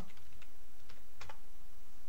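A few separate keystrokes on a computer keyboard as a search term is typed.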